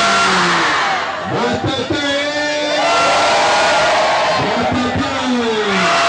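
A large crowd of many voices shouting and cheering at once.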